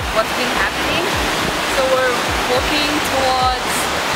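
Wind rushing over the microphone in a steady hiss, with low buffeting gusts that come and go and faint snatches of people's voices nearby.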